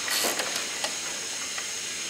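Steady background hiss with a few faint, light metal clicks as an open-end wrench works an anodized aluminium AN hose-end fitting held in a vise.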